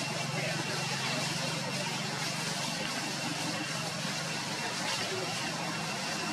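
Steady outdoor background ambience: an indistinct murmur of distant voices over a constant low engine-like hum.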